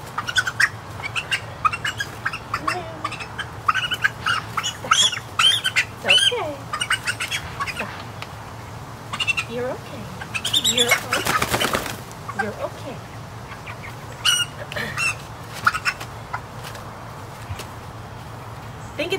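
A flock of young Cornish Cross broiler chickens making short, high peeping and squawking calls throughout, with a burst of wing flapping about eleven seconds in as a bird is handled onto the scale.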